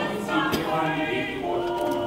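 A choir singing in several voices, with held notes.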